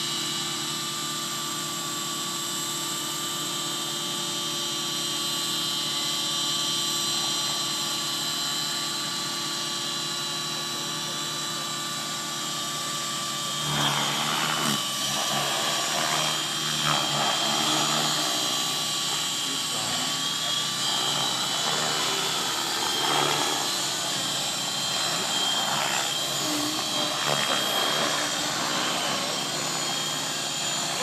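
Several radio-controlled model helicopters flying at once, their engines and rotors making a steady whine of several overlapping pitches. The sound grows louder and more uneven from about halfway through.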